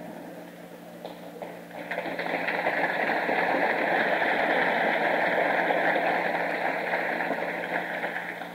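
Audience applause after a joke's punchline, swelling about two seconds in and dying away near the end, over a steady low hum.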